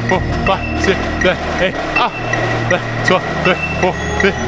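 Tenor drums (marching quads) struck in a fast rhythmic passage, several strokes a second, each drum note dropping slightly in pitch, over sustained low bass notes from the ensemble.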